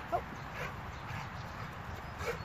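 Labradors playing close by on wet grass: faint panting and paw movement, with a brief exclaimed 'oh' right at the start.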